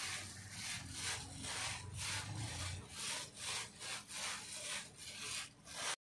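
Soybean seeds being mixed to coat them with thiram fungicide powder during seed treatment: a rhythmic rustling swish of seeds rubbing together, about two to three strokes a second.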